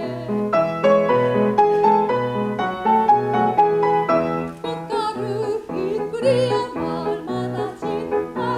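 Soprano singing a Korean art song in classical operatic style with vibrato, accompanied by a grand piano playing sustained chords over repeated low notes.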